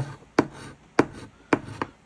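A coin scratching the latex coating off a paper scratch-off lottery ticket on a tabletop. It gives four sharp clicks, each with a brief rasp, spread evenly over the two seconds.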